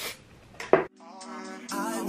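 A short hiss from an aerosol hair spray can at the very start, then after a sudden cut, background music with singing from about a second in.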